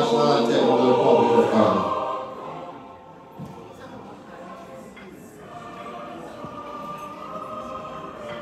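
A recorded national anthem sung by a choir with orchestra ends on a loud, held chord about two seconds in. After a short lull, quieter orchestral music begins about five and a half seconds in, the start of the next anthem.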